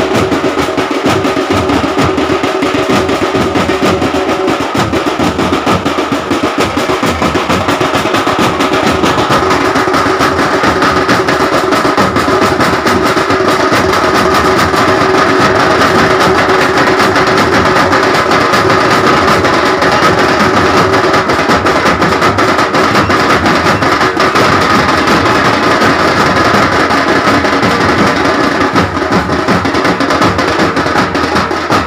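Loud, continuous music driven by fast, dense drumming, with a held melody line sounding over the beat.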